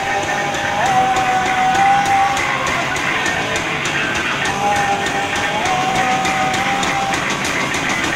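Live punk rock band playing: electric guitar, bass guitar and a Tama drum kit, with a steady cymbal beat. A long high note is held twice, once about a second in and again just past the midpoint.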